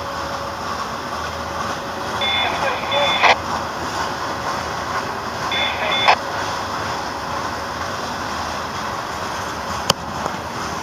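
Freight cars rolling past on jointed steel rails, a steady rumble and clatter of wheels. Two brief high-pitched squeals about three seconds apart, each ending in a sharp clank.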